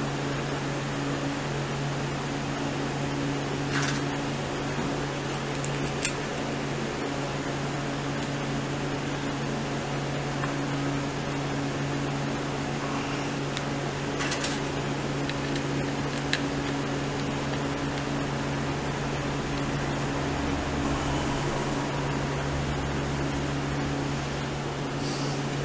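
Steady low machine hum, with a few light metallic clicks as clutch parts are fitted by hand on a Royal Enfield Bullet's clutch.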